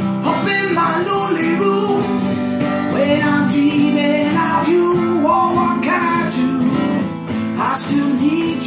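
A man singing while strumming an acoustic guitar steadily.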